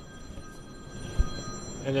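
A steady high-pitched ringing tone, several pitches sounding together, cuts off shortly before the end. A short, soft low thump comes about a second in.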